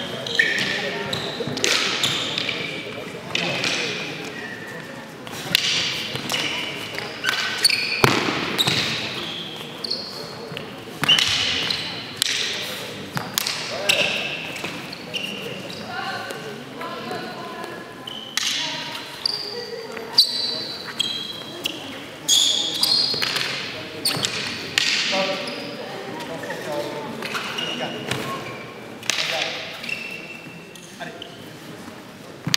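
Chestnut-wood fighting canes striking and clashing again and again in a canne de combat bout, each sharp crack ringing briefly in a large sports hall, with shoes squeaking on the gym floor between hits.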